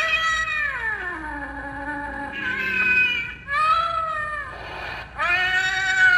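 Animated Halloween black cat decoration playing recorded cat meows through its speaker: four long, drawn-out meows, the first sliding down in pitch.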